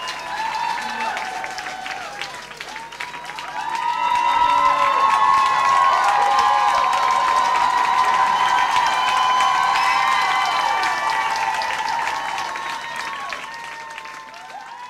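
Studio audience applauding and cheering at the end of a live rock song, with voices calling out over the clapping. It swells about four seconds in and fades towards the end.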